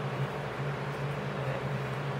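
Steady low hum with a hiss: room background noise, with no distinct brush strokes or handling sounds.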